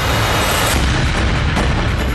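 Tense background music with deep booming beats, and a rushing swell in the first half second.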